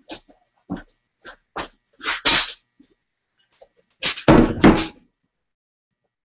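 Handling noise from a cut length of flat steel bar being lifted off the band saw and carried away: a string of short knocks and scuffs, loudest around two seconds in and in a cluster from about four to five seconds.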